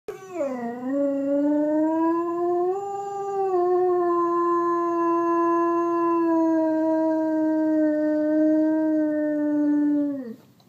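German Shepherd dog howling in response to a passing siren: one long, unbroken howl that dips in pitch at the start, then holds nearly level and falls away at the very end.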